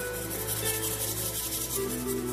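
Instrumental passage of a slow pop ballad's backing track: held bass and chord tones under a rhythmic, hissing high-pitched percussion texture, with no singing.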